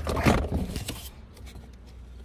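Plastic handling noise with a few sharp clicks as a wiring connector is worked loose from the door panel's window-switch housing, mostly in the first second, then a quiet low hum.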